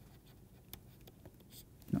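Faint, scattered taps and scratches of a pen stylus writing on a tablet, a word being handwritten stroke by stroke. A brief spoken word comes just before the end.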